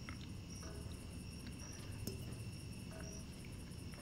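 Faint crickets chirping in an even, steady pulse. A few faint small clicks sound over it, and a sharper tap comes about two seconds in.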